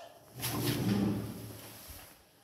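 Hinged steel landing door of a 1977 ZREMB Osiedlowy lift swinging shut under its overhead door closer. It makes a rumbling slide of about a second and a half that fades away.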